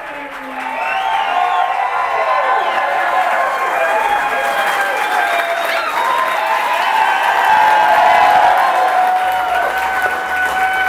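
Audience applauding and cheering loudly, many voices whooping over the clapping, swelling to its loudest near the end.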